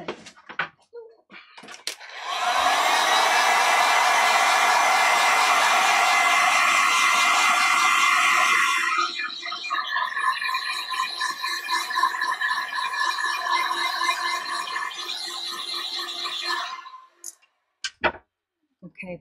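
Craft heat gun drying wet paint on fabric: the fan motor starts about two seconds in with a rising whine and runs loudly and steadily, then runs quieter from about halfway until it cuts off near the end.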